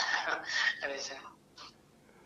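A man laughing breathily, almost without voice, in a few exhaled bursts over the first second and a half.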